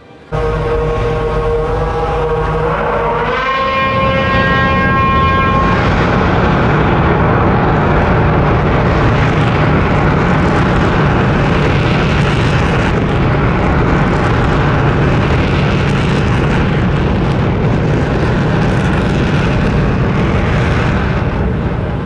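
Test firing of the Bloodhound SSC prototype hybrid rocket with its Cosworth Formula One engine-driven pump: a very loud roar starts abruptly. The engine's whine holds steady, then rises sharply in pitch about three seconds in as it revs up. From about six seconds the rocket's steady roar covers everything.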